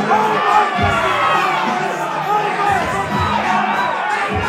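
A crowd of onlookers yelling and cheering, many voices overlapping, hyping up a krump dancer, with music and its bass beat underneath.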